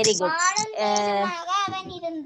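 Speech only: a voice reading Tamil words aloud in a drawn-out, sing-song way.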